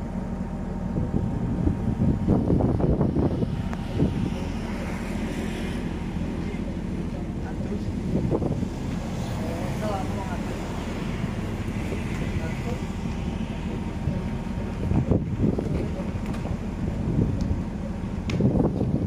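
Steady low engine rumble, with people talking intermittently in the background.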